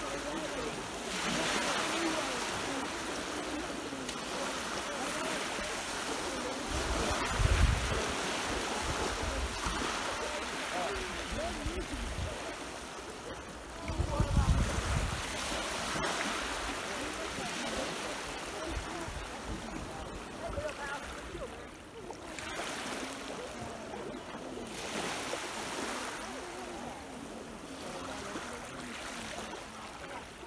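Small sea waves breaking and washing over the shore at the water's edge, swelling and fading every few seconds. Twice, a brief low rumble of wind hitting the microphone.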